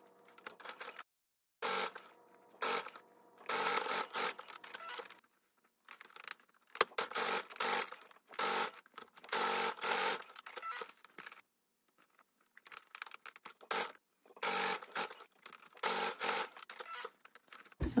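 Baby Lock Sofia 2 sewing machine zigzag-stitching in short starts and stops, about a dozen bursts with brief pauses between them as the fabric is repositioned.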